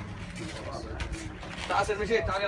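Indistinct voices of people talking quietly, over a steady low rumble, with a louder burst of voice near the end.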